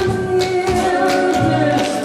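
Music with singing voices holding long notes over a steady beat.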